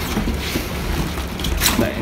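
Scissors cutting through a cardboard box and the cardboard being pulled open, a rough scraping and rustling.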